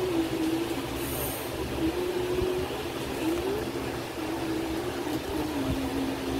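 A faint tune wanders up and down in pitch, holding a few notes with a short upward slide near the middle, over a steady background hiss and low rumble.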